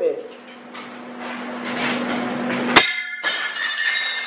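Broken glass clinking faintly, then one loud smash about three quarters of the way in that rings briefly afterward.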